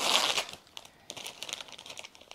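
Clear plastic wrap crinkling as it is pulled off a tote bag's handles: a loud rustle in the first half second, then softer scattered crackles.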